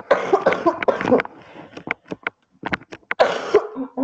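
A person coughing in two bouts: one in the first second, another about three seconds in.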